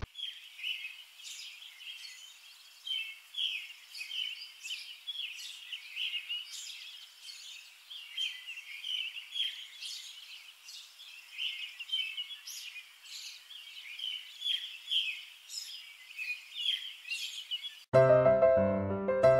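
Small birds chirping outdoors: a continuous run of short, high chirps, one or two stronger ones a second over softer chatter.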